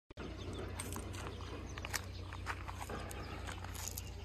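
A dog on a leash moving over loose gravel and stones: scattered clicks and scuffs of stones underfoot, over a steady low hum.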